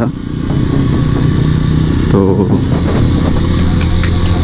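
Motorcycle engine running steadily at low speed in a low gear while riding over a rough gravel road, with scattered clicks and knocks from the loose surface.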